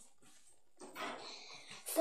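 Near silence, then about a second in a soft, breathy rush of a child's breath, panting after dancing, just before her singing resumes.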